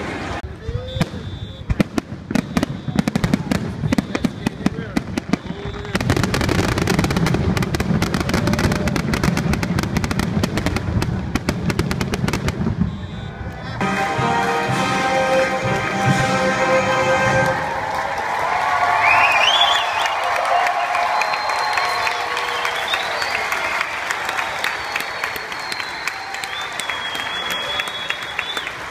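A dense, irregular crackle of sharp pops that stops abruptly about halfway through. Then live band music from an outdoor concert stage, heard from the grandstand over crowd noise, with a rising note about twenty seconds in.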